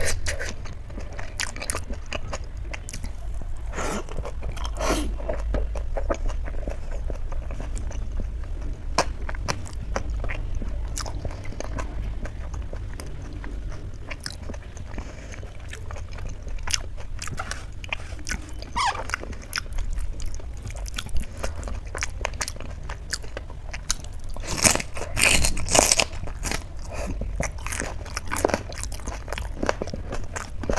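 Close-miked eating sounds: chewing and wet mouth clicks and smacks from a person eating rice and dal by hand, with a denser run of smacking and crunching about 25 seconds in. A steady low hum lies underneath.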